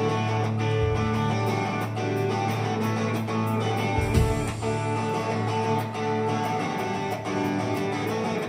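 Punk rock band playing live: electric guitars strumming over bass and drums in an instrumental passage, with a steady beat and a heavier low thump about four seconds in.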